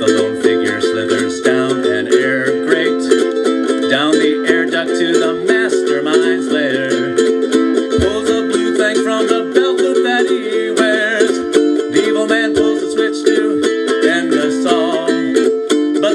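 Ukulele strummed steadily through an instrumental stretch of a song, with a wavering higher melody line over the chords. A single brief low thump about halfway through.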